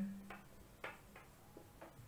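Marker pen writing on a whiteboard: a few faint, short strokes and taps as a word is written.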